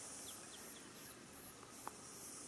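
Faint high-pitched insect chirping that pulses in an even rhythm several times a second, with a faint click near the end.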